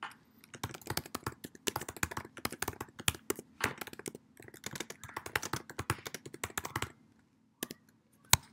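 Typing on a computer keyboard: a rapid run of keystrokes with a brief pause about four seconds in, stopping about seven seconds in, followed by a single keystroke near the end.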